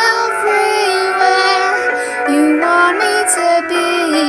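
A young woman's solo singing voice carrying a slow melody, moving from note to note and holding several notes for about a second.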